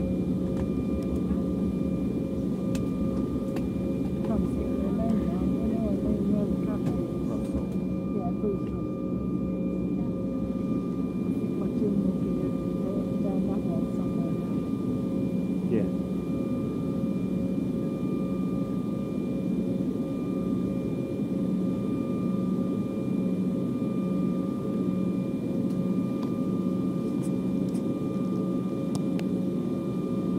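Steady cabin noise of an Embraer 195 jet airliner heard from inside the cabin: its twin turbofan engines give an even rush with a constant low hum and fainter whines over it.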